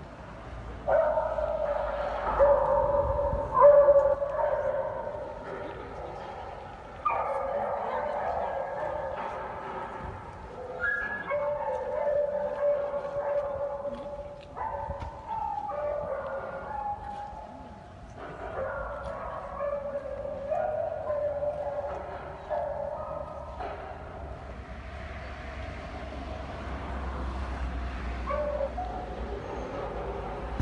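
Many beagles howling together, long drawn-out howls overlapping in waves that die down and start up again every few seconds. The howling grows fainter in the last few seconds.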